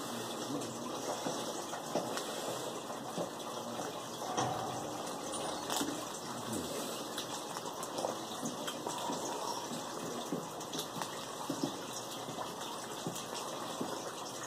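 Small clear plastic packet crinkling in the hands, with quiet eating and chewing, over a steady background hiss.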